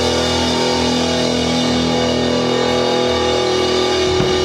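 Live rock band playing: electric guitars holding a sustained, ringing chord over the drums.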